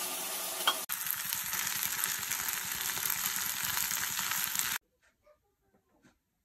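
Food sizzling as it fries in a pan on a gas stove, with a sharp knock just before a second in; the sizzling cuts off abruptly near the end.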